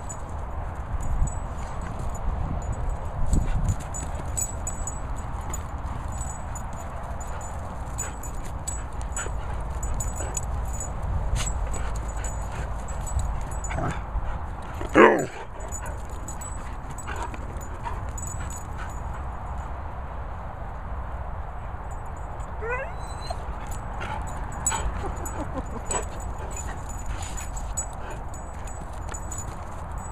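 An English Pointer and a Cocker Spaniel playing on grass, with small scuffling clicks over a steady low rumble. One short yelp comes about halfway through and is the loudest sound. A brief rising whine follows several seconds later.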